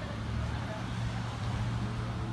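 A steady low hum of running machinery, such as an idling engine, over outdoor background noise.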